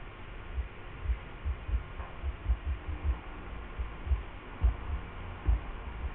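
Irregular soft low thuds, one to three a second, over a faint steady hum.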